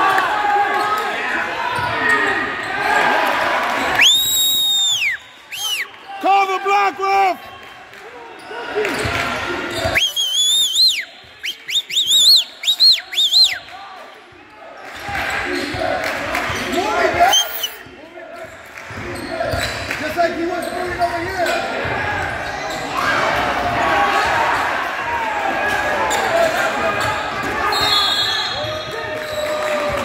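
A basketball bouncing on the gym's hardwood floor during play, with several short high squeaks in the middle stretch, typical of sneakers on the court, over crowd chatter and shouts in a large gym.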